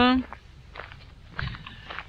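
Footsteps on gravel, a few soft crunching steps, after a drawn-out spoken word at the start.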